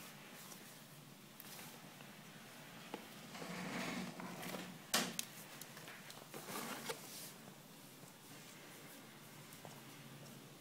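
Plastic fashion dolls being moved about by hand, rustling and knocking lightly against each other, with one sharp knock about halfway through.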